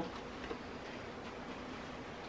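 Quiet room tone with a few faint light clicks, the clearest about half a second in.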